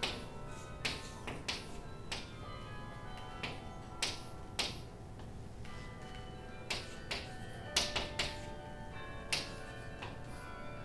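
Chalk tapping and scraping on a chalkboard as a diagram is drawn: about fourteen sharp, irregular taps, some in quick clusters of two or three, over a faint steady hum.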